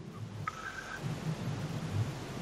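Steady hiss of background line noise with a faint low murmur underneath and a brief, faint thin tone about half a second in.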